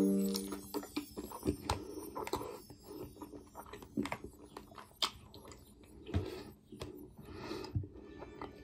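Close-up mouth sounds of someone chewing strawberries: irregular wet smacks and small clicks, with two short breathy noises near the end. Background music fades out right at the start.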